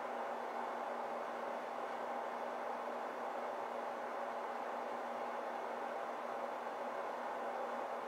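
Steady room noise: an even hiss with a faint low hum.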